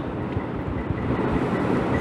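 Steady background noise of the hall in a pause between sentences: an even rushing hiss with no words, quieter than the lecture speech around it.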